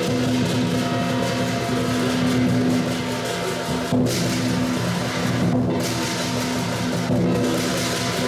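Live lion dance percussion: drum, gong and cymbals playing continuously, with a steady ringing tone held underneath and sharp crashing strikes about four seconds in and again a little after seven seconds.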